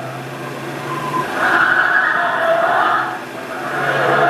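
Car engine and tyre noise on a vintage film soundtrack, swelling louder about a second and a half in and easing off near the end, with the thin sound of 8mm film-projector playback.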